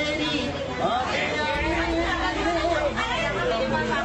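A man singing a Hindi love song unaccompanied, holding one note for over a second near the middle, with people chattering around him.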